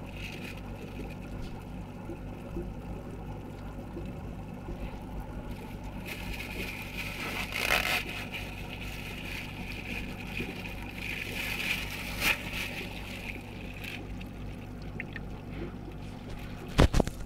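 Aquarium water stirred by a hand as it catches a small fish, sloshing and trickling, with two brief louder splashes, one about halfway through and one about three quarters through, over a steady low hum.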